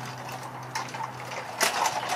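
Light clicks and scrapes of small objects being handled in dry dirt, with a cluster of louder clicks near the end, over a steady low hum.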